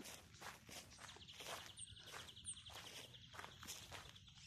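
Faint footsteps on a path, about three steps a second, with a faint high pulsing trill running behind them from about a second in.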